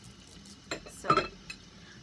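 A container of small charms being picked up and handled: a brief rustling clatter of small pieces about a second in.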